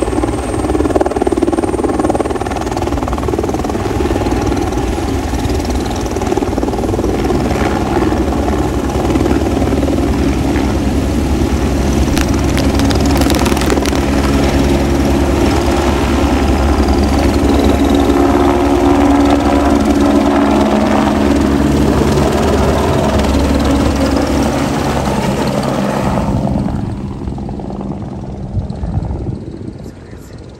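Helicopter flying close by: loud, steady rotor and engine noise that falls away about four seconds before the end.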